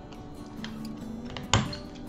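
A corner-rounder paper punch clicking once on kraft cardstock, a single sharp click about one and a half seconds in, over steady background music.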